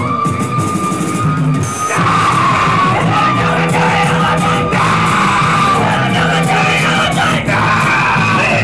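Live rock band playing loud in a small club, heard from among the crowd, with shouted vocals. A single high note is held for about two seconds, then the full band comes in and the sound gets louder and fuller.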